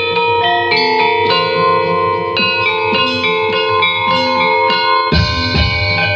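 Javanese gamelan ensemble playing: bronze gongs and metal-keyed instruments struck in repeated notes over long ringing tones. Deeper low strokes join about five seconds in.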